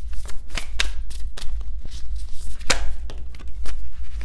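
A deck of heart-backed cards being shuffled by hand: irregular crisp clicks and slaps as the cards slide and snap against each other, a few louder ones, the loudest near the middle. A steady low hum runs underneath.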